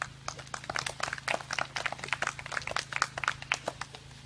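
A small audience clapping: many separate, irregular hand claps that thin out near the end.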